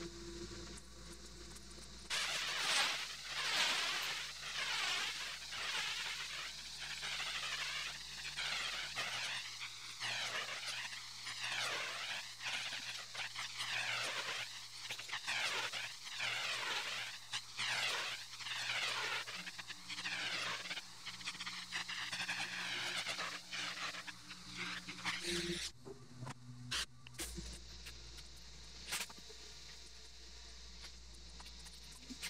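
High-pressure water from a pressure washer hitting a concrete driveway: a dense hiss that swells and fades about once a second. It starts about two seconds in and cuts off near three-quarters of the way through, leaving a quieter, lower steady hum.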